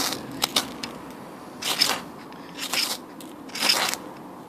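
Ferrocerium fire steel scraped hard along the spine of a TOPS Brothers of Bushcraft Fieldcraft knife, a series of short scraping strikes about a second apart.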